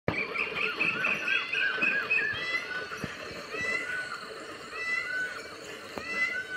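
Animal calls outdoors: many short, high, arching calls, crowded together for the first couple of seconds and then coming more sparsely.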